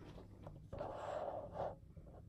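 A person's breathy exhale, one soft puff of air lasting about a second, starting near the middle.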